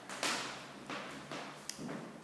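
Footsteps on a bare hardwood floor: a few soft, irregular scuffs and taps about half a second apart, with a sharp click near the end.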